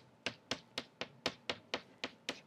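A word being written out on a board: a regular series of sharp taps, about four a second.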